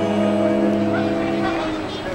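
A live band's held chord on guitars and banjo rings out and fades away about a second and a half in, leaving the murmur of the audience.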